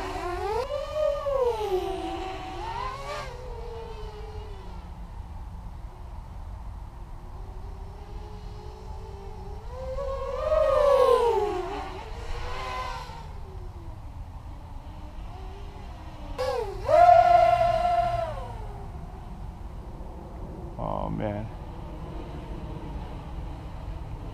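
ImpulseRC Alien racing quadcopter's brushless motors and 6-inch props whining, the pitch rising and falling with throttle. There are louder throttle punches about ten seconds in and again near seventeen seconds; the second is held at a steady high pitch for about a second and a half before dropping away. A steady low rumble of wind on the microphone runs underneath.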